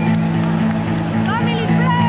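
Rock band playing live through a PA, guitars and bass holding a steady chord with drum and cymbal strokes. In the second half a voice rises and falls in pitch over the music.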